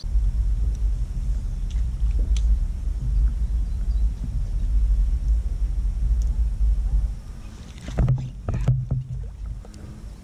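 Low, uneven rumble on the kayak-mounted microphone as the kayak moves across the water, dropping away about seven seconds in, followed by a few sharp knocks.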